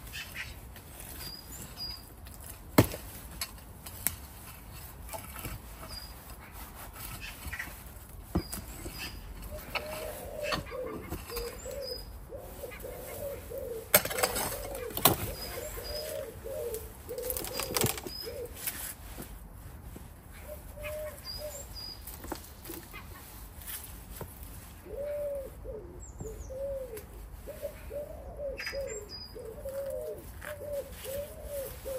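Compost being dug and scraped out of the bottom hatch of a plastic compost bin by gloved hands and a hand tool, with a few sharp knocks. Behind it a pigeon coos in repeated phrases and small birds chirp.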